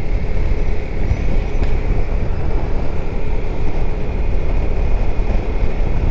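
Zontes 350E scooter under way and gaining speed: steady wind rush over the helmet microphone with the drone of its single-cylinder engine and road noise beneath, and a faint steady whine.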